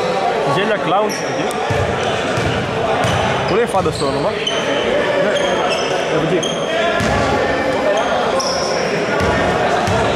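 Indoor basketball court sound: voices echoing in a large hall, with short high squeaks of sneakers on the hardwood floor scattered through.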